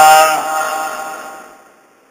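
A man's voice holding out the last drawn-out syllable of a sentence, fading away over about a second and a half.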